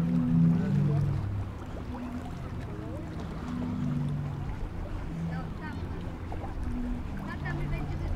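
Zadar's Sea Organ: wave-driven pipes beneath the promenade sounding low, overlapping held notes at several pitches, each lasting under a second. The notes are loudest in the first second and go on more faintly, with faint voices of passers-by.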